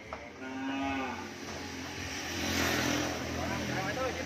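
Cow mooing, a shorter call near the start and a longer, louder one in the second half.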